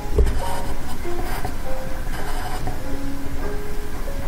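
A graphite pencil scratching across paper in a few short strokes as it writes a Chinese character, over soft background music of slow, held notes.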